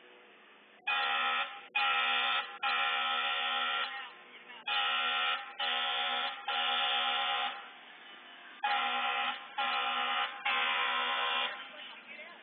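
Vehicle horn sounding in three groups of three blasts, each group two shorter blasts followed by a longer one.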